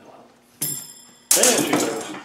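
Steel gearbox parts clinking and clattering: a sharp ringing clink about half a second in, then a louder clatter about a second later. These are pieces of the LT77's synchromesh (slippers and springs) dropping out as the gear cluster is lifted from the box.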